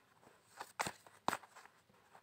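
A deck of Lenormand cards being shuffled by hand: a handful of short, crisp slaps of card on card, irregularly spaced.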